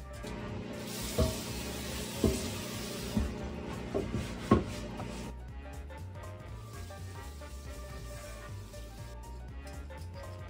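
Light knocks of kitchen items being handled and set down at the sink, five in about three and a half seconds, over a steady hiss that stops about five seconds in, with background music underneath.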